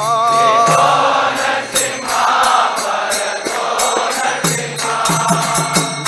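Devotional kirtan chanting: a single lead voice sings a line, then a group of voices answers for several seconds, and the lead returns near the end. Throughout, hand cymbals (karatalas) strike in a steady rhythm.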